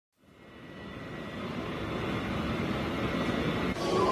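Airport ambience: a steady roar fading in from silence and growing louder over nearly four seconds, giving way abruptly to other sound just before the end.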